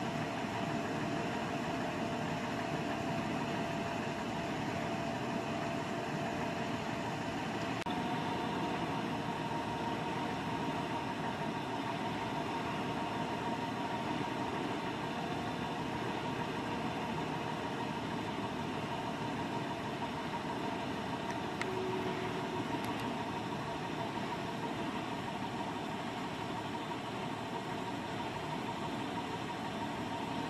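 Steady low rumble and hiss like an engine idling nearby, with faint humming tones that shift in pitch about eight seconds in.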